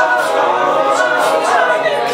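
A vocal group singing a cappella in close harmony, several voices holding and gliding between sustained chords.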